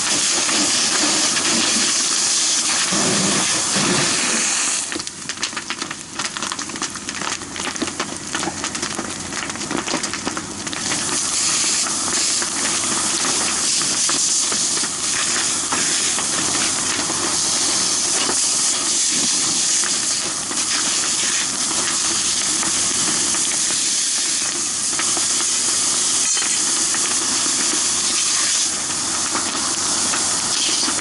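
Fire hose nozzle spraying a hard stream of water into burning wreckage: a loud, steady hiss of water and steam. From about five to eleven seconds in, the hiss drops a little and turns crackly and uneven.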